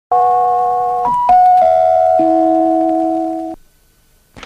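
Electronic chime jingle of a TV advertising-break ident: sustained synthesizer tones, with new notes entering one after another and held over each other to build a chord, then cutting off suddenly about three and a half seconds in.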